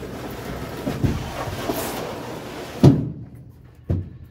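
Plywood storage box slid across a ribbed, painted steel pickup bed, a long scraping rub, then a loud knock about three seconds in as it stops, and a second smaller knock just before the end.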